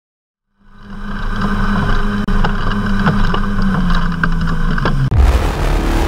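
A low, steady hum fades in with scattered crackling ticks and steps down in pitch near its end. About five seconds in, a sudden loud, noisy burst takes over.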